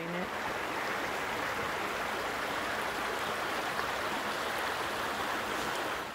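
Shallow creek running over rocks: a steady rush of flowing water.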